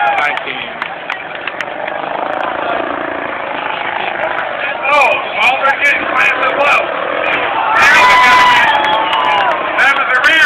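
Demolition derby cars' engines running in the dirt arena under a steady crowd din, with a voice talking over it, loudest about halfway through and again near the end.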